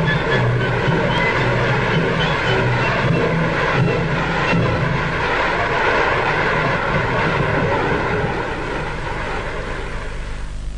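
Audience applauding, a dense, steady clapping noise that eases slightly near the end.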